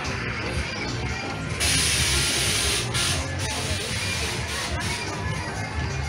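Fairground music playing with a steady bass beat, under a background of crowd chatter. About a second and a half in, a loud burst of hissing cuts across it for just over a second.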